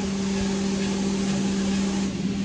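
Automatic car wash machinery running, heard through the minivan's open windows: a steady rushing noise over a constant low hum.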